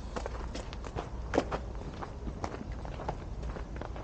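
Footsteps of a person walking, an irregular series of short steps, the sharpest about a second and a half in, over a steady low rumble.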